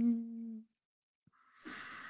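A person humming a short, steady 'mmm' on one pitch that fades out about half a second in, followed by a soft hiss near the end.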